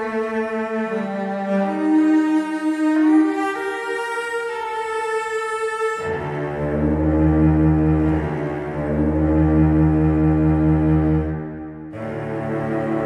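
Solo cello, a sampled first-chair cello, playing a slow legato line of sustained, expressive bowed notes that glide from one into the next. About six seconds in it moves down to long, low held notes.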